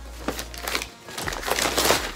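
Paper and card packaging of a small gift rustling and crinkling as it is handled and unwrapped, in irregular bursts that are loudest near the end.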